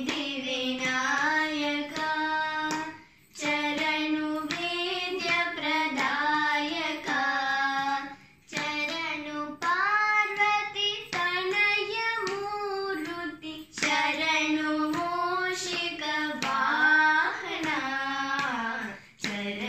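Young girls singing a Carnatic devotional song to Lord Ganesha, with held, ornamented notes in phrases of a few seconds broken by short pauses for breath.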